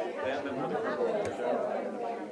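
Several people talking over one another in a large room, with laughter near the end.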